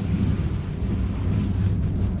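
Wind-driven millstones, each about a tonne, turning and grinding wheat in a working windmill: a steady low rumble.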